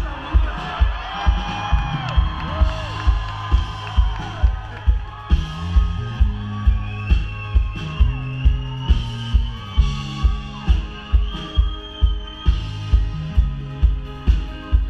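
A live band playing through a PA system, heard from within the crowd: a steady kick drum about twice a second under a moving bass line, with gliding higher melody lines.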